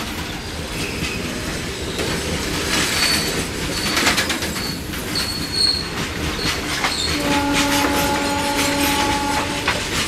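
Freight train of covered goods wagons rolling past, with wheels clattering over the rail joints and brief high-pitched wheel squeals around three to six seconds in. About seven seconds in an electric locomotive's horn sounds steadily for about two and a half seconds.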